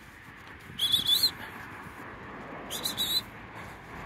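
Sheepdog handler's whistle: two short high whistle blasts about two seconds apart, each with a bend in pitch, used as commands to a working border collie.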